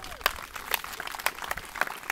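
Scattered applause: a small audience clapping, with sharp individual claps standing out.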